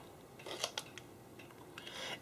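Marker pen drawing on a white writing surface: faint scratchy strokes, a few short ones about half a second in and more near the end.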